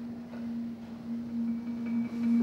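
A single low musical note held steadily, with a faint higher tone joining it near the end, as quiet accompaniment to a storytelling performance.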